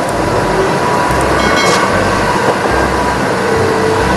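MAN concrete mixer truck driving along a street: heavy diesel engine and road noise, a steady dense rush with a thin steady whine running through it.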